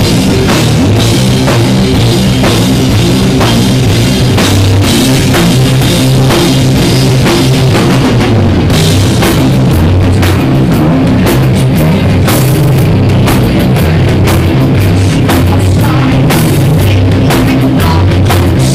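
A heavy metal band playing live: bass guitar, guitar and a drum kit with cymbal crashes, loud and steady throughout. The recording is harsh and overloaded.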